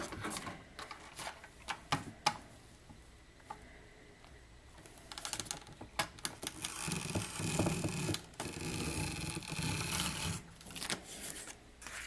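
Handheld glue glider gun (an adhesive tape runner) being drawn across cardstock: a few handling clicks, then from about five seconds in a rattling whirr of its dispensing mechanism for about five seconds as it lays down adhesive.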